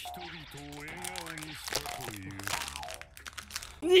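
Thin plastic water bottle crinkling and crackling as it is squeezed while being drunk from.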